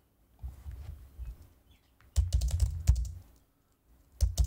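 Typing on a computer keyboard: a few light knocks about half a second in, then a quick run of keystrokes about two seconds in, lasting under a second, as a short chat message is typed.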